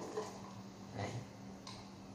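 Faint handling of a plastic screw-top lid being twisted off a glass jar of honey, with a soft tick near the end, over a steady low hum.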